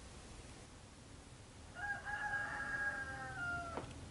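A rooster crowing once: one long call of about two seconds, starting halfway through and dropping in pitch at its end, followed by a short click.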